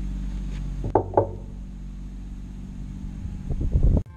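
Light clicks and taps from handling a seven-way trailer plug and a screwdriver: two close together about a second in and a quicker run of clicks near the end, over a steady low hum.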